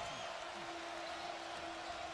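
Steady arena crowd noise during a tense late-game possession, with a single thin held tone coming in about half a second in.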